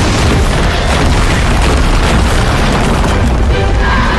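A loud, sustained magical-blast explosion sound effect with a heavy deep low end, starting suddenly and holding steady, laid over dramatic score music.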